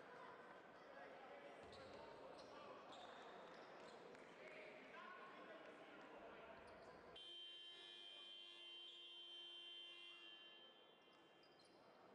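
Faint basketball-hall sound: scattered voices and a few ball or floor knocks. About seven seconds in, a steady electronic horn sounds for about three seconds and then stops, typical of a game buzzer during a stoppage in play.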